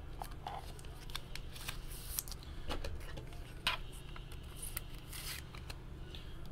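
Trading cards being handled and shuffled through by hand: scattered rustles and light clicks, the sharpest click about three and a half seconds in.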